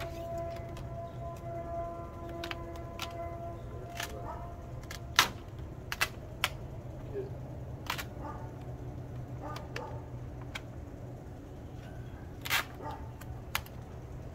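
Large vinyl decal on its plastic backing film crackling and snapping as it is pressed and smoothed by hand against a van's side panel: scattered sharp clicks, the loudest about five seconds in and again near the end, over a steady low hum.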